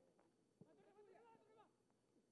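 Near silence, with faint, distant voices shouting and calling.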